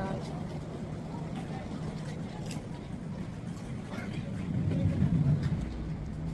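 Steady low rumble of road traffic with an engine hum, swelling for a moment about five seconds in.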